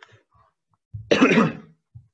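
A person clearing their throat once, about a second in.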